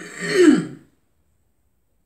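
A person clears their throat once: a single short rasp, under a second long, dropping in pitch.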